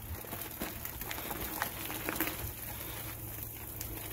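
Bicycle tyres rolling over a gravel and dirt trail: a steady low crackling hiss with a few small clicks and knocks from the moving bikes.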